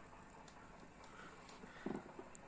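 Very quiet room tone, with one brief faint sound near the end.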